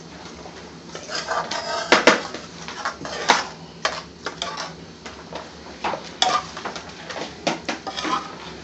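Metal spoon clinking and scraping against a ceramic serving dish and a metal pan as thick curry sauce is spooned out: a string of irregular clinks and knocks, the sharpest about two and three seconds in, over a steady low hum.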